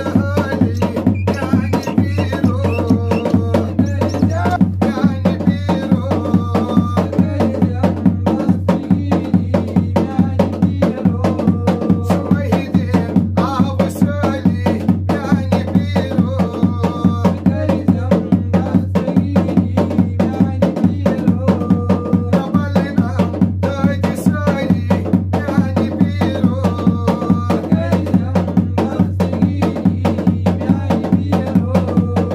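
Kashmiri folk music: a rope-laced, two-headed dhol drum beaten with a stick and hand in a fast, even rhythm of about four strokes a second, with voices singing a short melody that repeats every few seconds.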